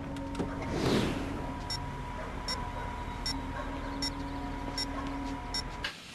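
Film soundtrack: quiet sustained music with light ticks about every 0.8 seconds over a low street rumble, with the whoosh of a passing car about a second in. It all drops away suddenly at the scene cut near the end.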